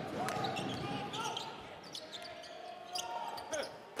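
Basketball dribbled on a hardwood arena court, a few sharp bounces over the steady noise of the crowd.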